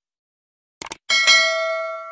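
A quick double mouse-click sound effect, then at once a bright bell ding of several ringing tones that fades slowly. It is a notification-bell chime sound effect.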